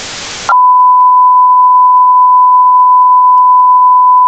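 Hiss of static that cuts off about half a second in, giving way to a loud, steady electronic beep held at one pitch.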